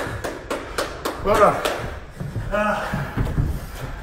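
Short bursts of a man's voice without clear words. Through the first two seconds there is a run of quick taps and knocks.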